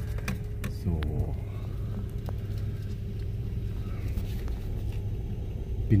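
Car engine idling, a steady low rumble with a faint hum, heard from inside the cabin.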